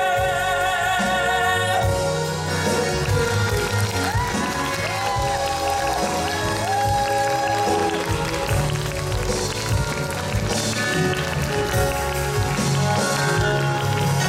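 Live musical-theatre number with band accompaniment. A male singer holds a long note with vibrato that ends about two seconds in, and the band music carries on after it.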